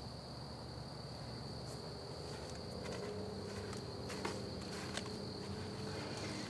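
Crickets chirping in a steady, continuous high-pitched chorus, with a few faint knocks scattered through it.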